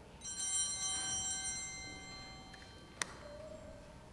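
Altar bells shaken once at the elevation of the chalice during the consecration, ringing out and fading away over about two seconds. A single sharp click follows about three seconds in.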